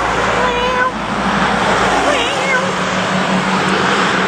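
Cars passing close by on a road: a loud, steady rush of road noise. A voice makes two short sung notes over it.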